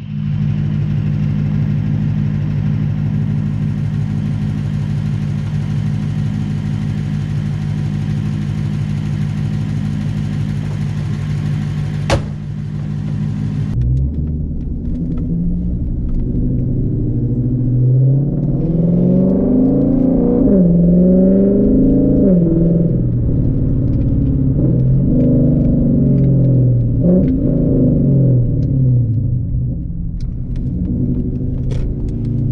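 Lexus IS F's V8 engine idling steadily with the hood open, with one sharp click about twelve seconds in. After a cut at about fourteen seconds it is heard from inside the cabin as the car drives off, the engine note rising and falling as it accelerates and eases off.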